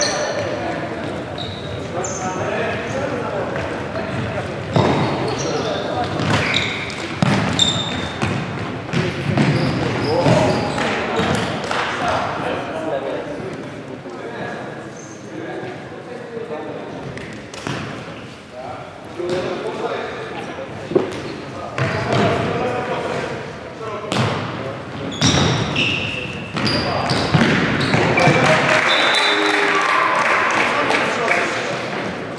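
Indoor futsal game: players shouting and calling to each other, with the ball being kicked and bouncing on the wooden hall floor in sharp thuds, all echoing in the large hall.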